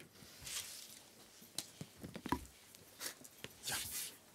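Faint rustling and a few light clicks of paper and a pen being handled on a table, as a contract is got ready for signing. There is a soft rustle about half a second in and another near the end, with short clicks between.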